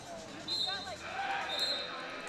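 Two short, high referee's whistle blasts about a second apart, the whistle that starts a roller derby jam, over faint voices in a large hall.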